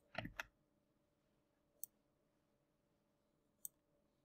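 Near silence broken by a few faint computer clicks while a line is copied and pasted: a short cluster at the start, then single clicks about two and three and a half seconds in.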